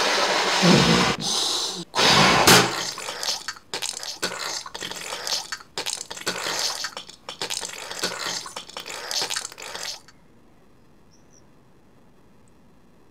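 Liquid gushing and sloshing: heavy rushing surges with a deep low end in the first three seconds, then choppy splashing bursts that stop suddenly about ten seconds in.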